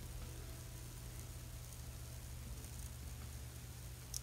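Faint steady hiss with a low hum underneath and no distinct events: background noise of a narration recording between sentences.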